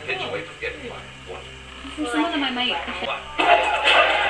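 Soft voices over quiet music. About three and a half seconds in, the sound switches abruptly to a louder film soundtrack with music and voices from a television.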